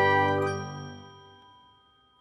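Bell-like chime notes of a short logo music sting ringing out together and fading away over about a second and a half, ending in silence.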